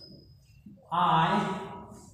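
A man's voice drawing out one long syllable, about a second in, after a near-silent start.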